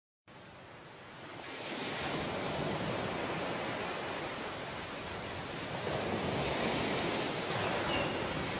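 Ocean surf on a sandy shore: a steady rush of waves that fades in over the first two seconds and then holds.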